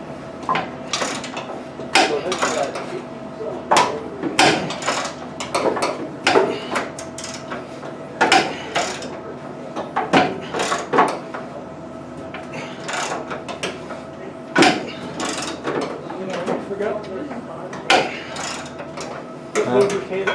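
Ratchet wrench clicking in irregular strokes as a bolt joining the wing box to the fuselage is tightened, with metal knocks against the aircraft's frame. A steady hum runs underneath.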